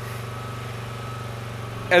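Portable inverter-type generator engine running steadily at an even hum.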